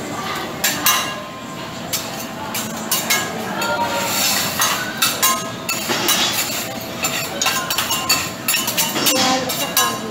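Metal teppanyaki spatulas clinking, tapping and scraping on a steel griddle as eggs are chopped and scrambled, with irregular sharp clinks throughout.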